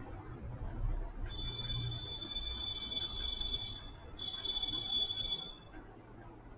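A high-pitched steady beep sounds twice: a long tone of about two and a half seconds, then after a short break a second tone of just over a second.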